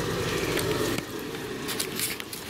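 A tub crowded with young rats shuffling and scratching in wood-shaving bedding under a wire lid. This comes over a steady low rushing noise that eases about a second in, with a few light clicks near the end.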